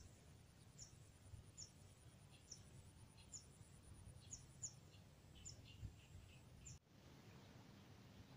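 Faint outdoor ambience with a small bird giving short, high, downward-sliding chirps, about ten of them at irregular intervals, over a low rumble. The chirps stop near the end, where the background suddenly changes.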